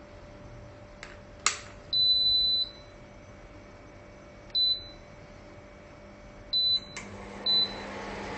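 A sharp click, then the Pensonic PIC-2005X induction cooker's beeper sounding four times at one high pitch: a long beep of nearly a second, then three short ones, as if its controls were being pressed. A faint steady hiss runs underneath.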